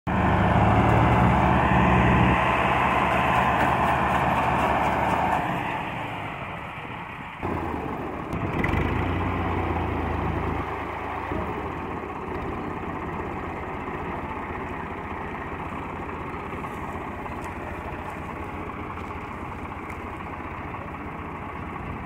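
Massey Ferguson 385 and Al-Ghazi farm tractors with their diesel engines running. It is loudest for the first five seconds or so, then drops, changes suddenly about seven seconds in, and settles to steadier, quieter running.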